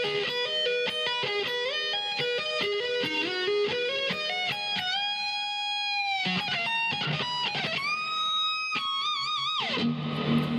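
Electric guitar playing a fast arpeggio lick: a rapid run of single notes, then a long held note, a few more notes, and a final sustained note with wide vibrato that slides down in pitch just before the end.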